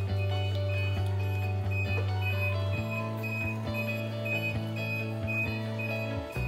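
Background music: held bass notes that change about three seconds in, under a short high tone repeating at an even beat.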